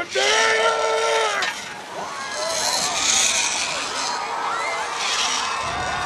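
A long held yell lasting about a second and a half, followed by a crowd of adults and children shouting and cheering.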